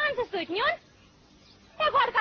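A high-pitched person's voice in short, quickly gliding phrases, breaking off for about a second in the middle before starting again near the end.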